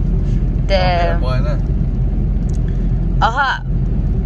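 Steady low rumble of a car's engine and tyres heard from inside the cabin while driving, with a voice breaking in twice, about a second in and again near the end.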